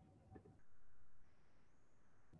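Near silence: faint room tone over a video call, briefly a little louder about half a second in.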